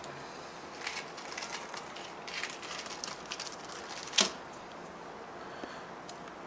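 A small plastic packet of Wilson crane swivels being handled and the little metal swivels tipped out onto a mat: faint rustling and light clicks, with one sharper click about four seconds in.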